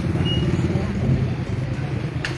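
Low, steady rumble of a motor vehicle engine running close by.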